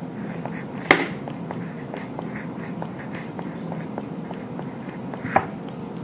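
A metal spoon clinking sharply against a small glass bowl twice, about a second in and again near the end, as aloe vera gel is spooned into powders.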